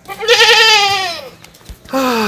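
A farm animal bleating once: a single loud, wavering call of a little over a second that falls in pitch as it ends.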